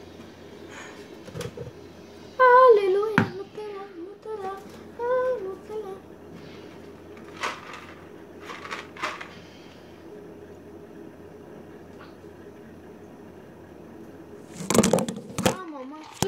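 A girl's voice, drawn out and wavering from about two to six seconds in, over a steady low hum, with a few sharp clicks and knocks of phone handling, and a louder burst of voice and rustling near the end.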